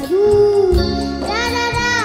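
A young girl singing a Hindi film song over live backing music. She holds two long notes, and the second slides down as it ends.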